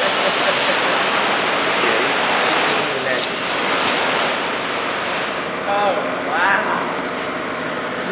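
Steady rushing noise of print-shop machinery running, with a laugh at the start and faint voices about six seconds in.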